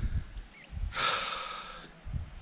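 A man's single loud breath out close to the microphone, starting suddenly about a second in and fading over about a second.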